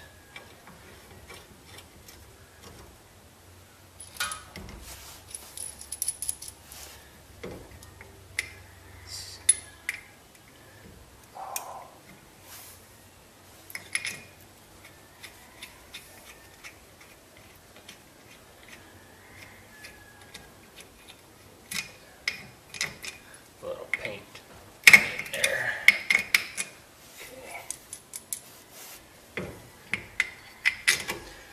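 Irregular metallic clinks and taps as a Brembo brake caliper and its mounting bolts are handled and fitted against a steel spindle, with a denser run of clinks near the end.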